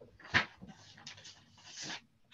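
Paper and cardboard being handled: a large envelope pulled out of a cardboard box, with a sharp slap about a third of a second in and a longer rustle near the end.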